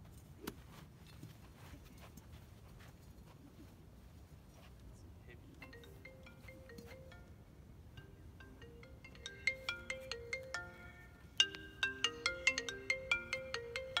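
Mobile phone ringtone: a repeating tune of short pitched notes that starts about five seconds in and gets louder twice, the phone ringing until it is answered.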